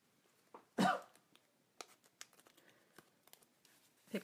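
A woman's single short cough or throat-clear about a second in, over an otherwise quiet room with a few faint clicks and ticks of small craft items being handled.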